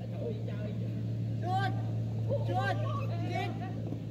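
Footballers' distant shouted calls across the pitch, three short shouts in the second half, over a steady low hum.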